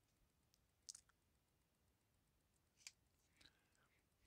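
Near silence, broken by two faint, sharp clicks about a second in and just before three seconds in: a cardboard 2x2 coin holder being handled and turned over in the fingers.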